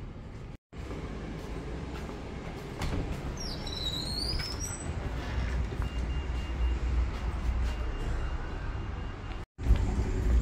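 Outdoor town ambience: a steady low rumble of traffic, growing louder a few seconds in, with a short high chirp about three and a half seconds in. The sound drops out completely for a moment near the start and again near the end.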